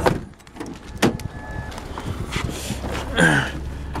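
Car door of a 2000 Ford Taurus: a sharp latch click about a second in, then rustling as someone climbs into the seat, and a cough near the end.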